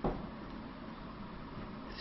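One short tap right at the start, a pen pressing a key on a Casio fx-991ES calculator, followed by a steady low hiss.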